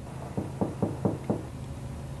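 A run of about six muffled knocks, several a second, from inside a car's trunk, heard from the cabin over the car's low hum: someone shut in the trunk pounding on it, which the occupants take as a sign he may be alive.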